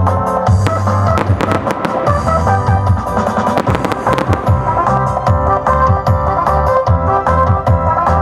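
Music with keyboard notes and a steady beat, over which a rapid run of sharp cracks from colored-smoke daytime fireworks being launched sounds from about half a second to four and a half seconds in.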